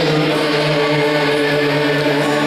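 Voices singing a Romanian Christmas carol (colind), holding one long note.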